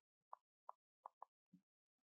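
Near silence with about five faint, short ticks, a stylus tapping and stroking on a tablet screen while handwriting.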